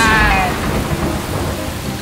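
A cartoon character's long scream that ends with a falling pitch about half a second in, followed by a steady low noise.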